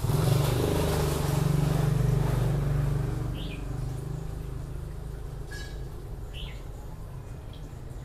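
Low engine hum from a passing vehicle, louder over the first three seconds and then fading, with a few short bird chirps.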